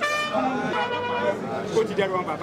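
A trumpet holds a note that dies away about half a second in, ending a brass phrase, followed by voices over the hubbub of the room.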